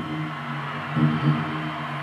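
Low sustained drone from a rock band's amplified instruments during a live concert, holding steady and swelling about a second in.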